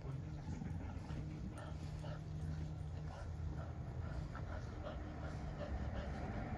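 Two dogs play-wrestling, with panting and small whining noises scattered through.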